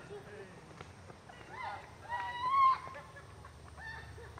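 A woman's voice crying out at a distance: a couple of short high-pitched cries, then one longer held cry a little past two seconds in.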